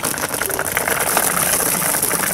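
Cheese balls rattling against a plastic tub and pattering onto a vinyl splash pad as the tub is tipped out, a dense run of small ticks over a steady hiss.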